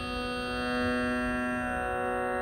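Steady Carnatic sruti drone holding one tonic pitch with its overtones, swelling slightly about a second in.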